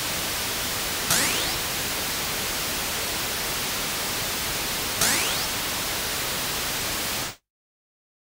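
Electronic synthesizer noise closing out an electronic pop track: a steady white-noise hiss with two sudden sweeping zaps about four seconds apart. The hiss cuts off abruptly near the end, leaving silence.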